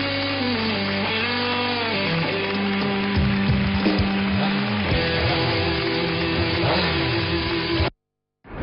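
Music with guitar playing, with notes that slide up and down in pitch, cutting off suddenly just before the end.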